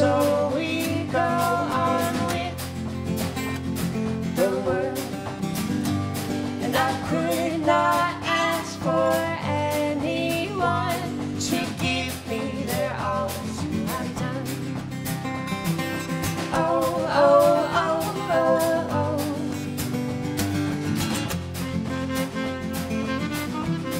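Indie-folk band playing a passage without words: a strummed acoustic guitar and a drum kit played with wire brushes on the snare, under a wavering melodic line.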